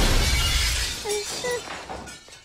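A sheet of glass shattering, a cartoon sound effect: one sudden loud crash, then a spray of breaking shards that dies away over about two seconds.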